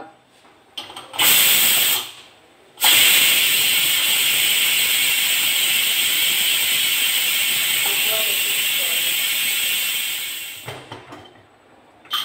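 Pressure cooker venting steam in a loud, steady hiss as its whistle weight is lifted by hand to let the pressure out early. A short burst comes first, then after a brief pause about eight seconds of continuous hiss that dies away as the pressure drops.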